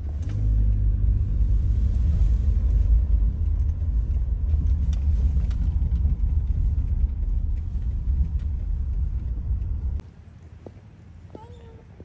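Steady low rumble of a taxi on the road, heard from inside the cabin. It cuts off abruptly about ten seconds in, leaving quieter outdoor ambience.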